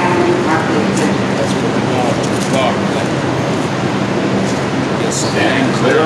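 Steady running noise inside a New York City subway car, with a low hum from the train's motors under it. Indistinct voices come and go over it.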